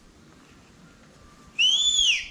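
Faint outdoor background, then about one and a half seconds in a single clear whistle that rises and then falls in pitch, lasting about half a second.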